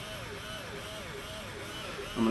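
Bunker Kings CTRL paintball hopper's drive motor running empty with no paint to stop it, a faint whine that rises and falls in pitch about three times a second.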